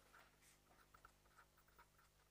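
Faint writing: short scratchy pen or chalk strokes, several a second, over a low steady hum.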